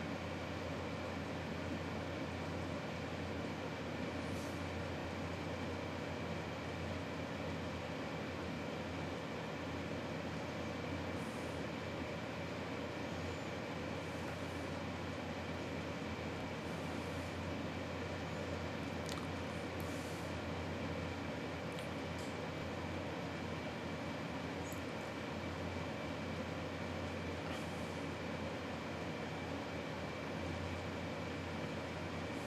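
Steady mechanical room noise, a low hum and hiss with a faint constant high whine, and a few faint ticks.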